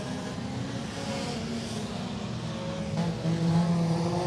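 Engines of a pack of front-wheel-drive compact race cars running at racing speed on a dirt oval, a steady drone that grows louder in the last second as the cars come past.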